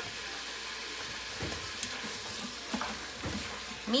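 Onions, green peppers and smoked bacon with tomato paste, garlic and cumin sizzling steadily as they sauté in an Instant Pot's stainless steel inner pot, with a few soft knocks and scrapes of a spoon stirring them.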